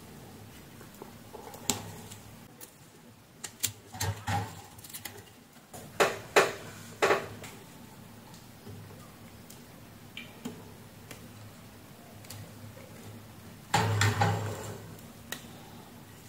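Hands working on a wall fan's motor stator and its thread-bound lead wires: scattered light clicks and rustles in a few short clusters, the loudest near the end.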